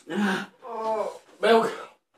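A young man's wordless pained vocal sounds, three short moans and gasps in quick succession, reacting to the burn of a very hot chilli.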